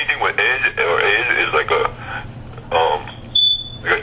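Speech that the transcript did not catch fills the first half, then a single short, high-pitched electronic beep sounds near the end, about half a second long.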